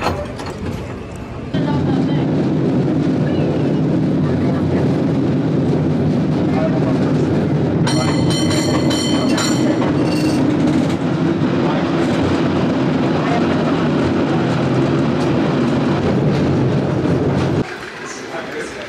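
San Francisco cable car running along its track: a loud, steady rumble from the moving car and its grip on the cable. About halfway through, the car's bell is rung in a quick run of clangs for about two seconds.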